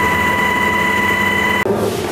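Helicopter in flight heard from inside the cabin: a loud, steady rush with a steady high whine. It cuts off abruptly about one and a half seconds in, leaving much quieter room noise.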